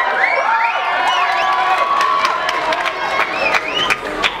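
Audience cheering and screaming, many high-pitched yells rising and falling over one another, with scattered claps that grow thicker near the end.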